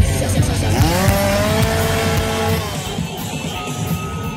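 Music playing, with a motor revving up about a second in, held high and steady for about a second and a half, then dropping back.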